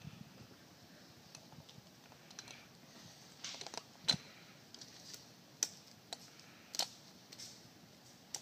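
Faint, scattered clicks and taps of hands and a compression gauge hose being handled at the outboard's open spark plug hole, as the gauge is fitted for the next cylinder's reading.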